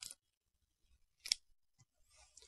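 A brief scratch at the start, then one sharp click about a second and a quarter in, with a faint tick just after: small handling noise at a whiteboard as the marker is put away.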